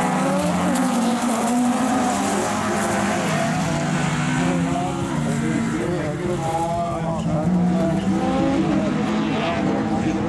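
Several Super 2000 rallycross cars racing together, their engines revving up and down through the gears, several engine pitches heard at once.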